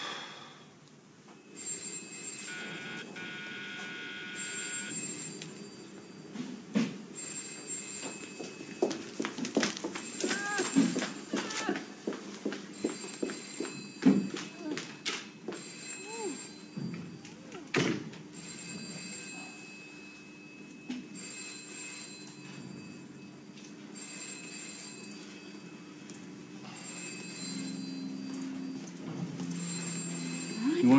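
A telephone bell ringing over and over in short bursts a few seconds apart, with a few sharp knocks and faint voices in between.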